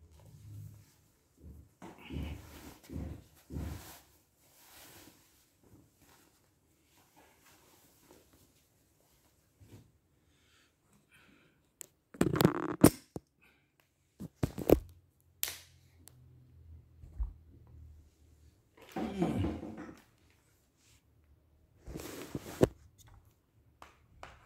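Irregular knocks, clicks and handling noise, loudest in a cluster of sharp clicks about halfway through, as a laptop and the phone filming it are handled.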